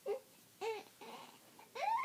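Young infant fussing with three short whimpering cries, the last one rising and longer: the baby wants to go on nursing.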